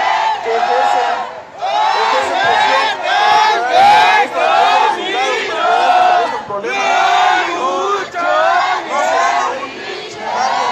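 Crowd of protest marchers chanting slogans together in loud, rhythmic shouted phrases, with short breaks about a second and a half in and about six and a half seconds in.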